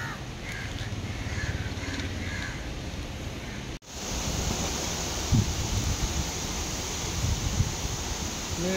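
Crows cawing several times in the first few seconds. After a sudden break, a steady outdoor hiss follows, with a few short clicks.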